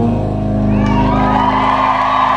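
A live rock band's last chord rings out on piano, guitar and drums. Less than a second in, audience cheers and whoops join it.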